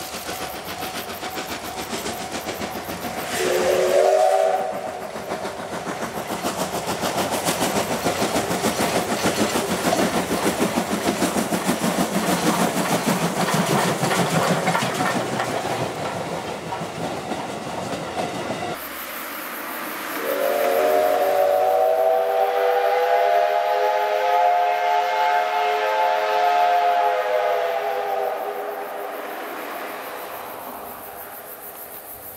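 C57 1 steam locomotive giving a short blast on its steam whistle about four seconds in, then working past with rapid exhaust beats as its coaches clatter over the rails. After an abrupt change near two-thirds through, the whistle sounds again in one long blast of about eight seconds.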